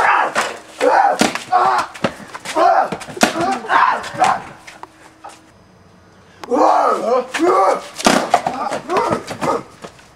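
A man's voice in wordless yells and cries, in two stretches with a short lull in the middle, broken by a few sharp cracks of a paintball marker firing.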